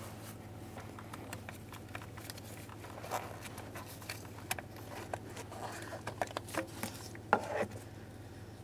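Scattered light clicks and knocks of a plastic EVAP purge solenoid valve being wiggled loose from its engine mounting and lifted out past hoses by a gloved hand. The clicks get busier in the second half, with the sharpest knock near the end.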